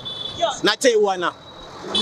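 A man speaking a short phrase, with street noise behind him.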